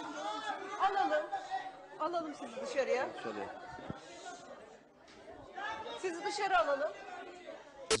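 Several voices talking over one another in Turkish, with a sharp click near the end.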